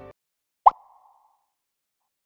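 A single short pop sound effect, about two-thirds of a second in, with a brief fading tail: a transition sting marking the move to the next item of the countdown.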